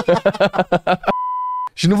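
A man laughing, then a steady electronic beep tone about half a second long, dubbed over the audio as a censor bleep.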